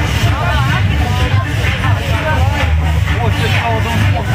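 Loud amplified festival music with a heavy, throbbing bass, with voices close by over it.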